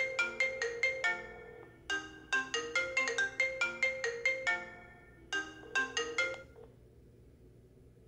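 iPhone ringing for an incoming call: a marimba-like ringtone melody of quick, bright notes in three phrases. It stops about six and a half seconds in, when the AnsweringMachine voicemail tweak picks up the call.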